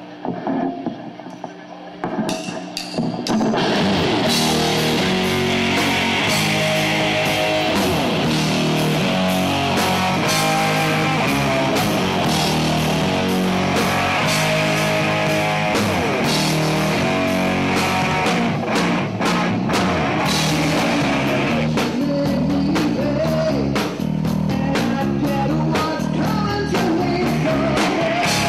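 A live rock band playing: distorted electric guitar, bass and drum kit. A quieter opening with a few sharp hits gives way to the full band about three seconds in, which then plays on steadily.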